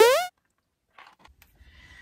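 A woman's short wordless vocal exclamation, sweeping sharply upward in pitch and cut off abruptly, followed by silence and a few faint clicks against low room hum.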